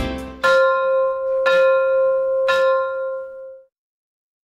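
Closing background music ends, then a bell-like chime strikes the same note three times, about a second apart, each stroke ringing on and the last fading out.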